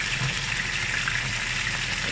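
Flour-dredged pork chops sizzling steadily in hot oil in a frying pan, with small crackles now and then.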